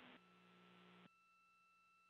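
Near silence: only faint steady electronic tones and a low hum, which shift slightly about a second in.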